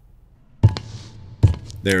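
Two footsteps from a foley footstep sample library played back, dress-shoe steps each a heavy thud with a sharp click, about a second apart.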